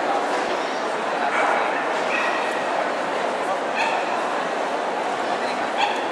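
Dogs yipping in short, high calls about two, four and six seconds in, over a steady background chatter of many people in a large hall.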